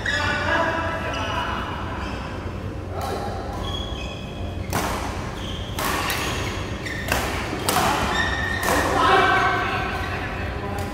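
Badminton rally: racket strings striking a shuttlecock in a string of sharp hits, the first about three seconds in, then roughly one a second, each ringing on in the large hall.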